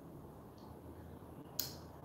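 Low room tone broken by a single short, sharp click about one and a half seconds in.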